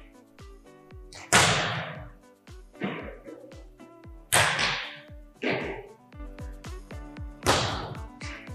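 Volleyballs being served: three sharp hand-on-ball smacks about three seconds apart, each echoing through the gym. Each smack is followed a little over a second later by a fainter impact of the ball landing. Background music with a steady beat plays throughout.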